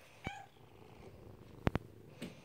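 Domestic cat purring faintly, with a short chirp-like call just after the start. Two sharp clicks come close together near the end.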